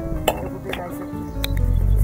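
Background acoustic guitar music, with a few sharp light clinks, typical of a small metal pot being handled, and a low rumble near the end.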